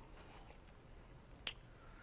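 Near silence with faint room tone, broken by a single brief, sharp click about one and a half seconds in.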